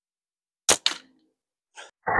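Prime Fork Cygnus Bold slingshot fired: a sharp crack as the flat bands are released, followed a fifth of a second later by a second crack, then a faint sound near the end.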